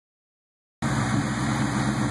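2004 SVT Cobra's supercharged 4.6-litre V8, fitted with a Whipple twin-screw supercharger, idling steadily. The sound cuts in just under a second in.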